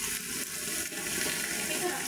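Heavy rain falling steadily, with water pouring off the roofs.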